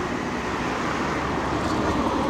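Steady road traffic noise, with a car running close by.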